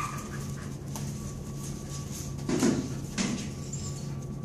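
A dog searching among plastic boxes on a hard floor, heard over a steady low room hum. There are two short soft sounds about two and a half and three seconds in.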